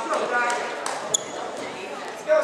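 Voices in a large, echoing school gym, with a few scattered sharp knocks and taps. The loudest knock comes about a second in and has a short ringing ping.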